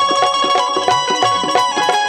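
Instrumental Marathi bharud accompaniment: tabla strokes in a steady beat under a held melody line.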